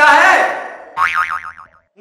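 Comic 'boing'-style sound effect: a warbling tone that wobbles rapidly up and down in pitch, loudest at the start and then fading, with a second, quieter wobble about a second in that dies away.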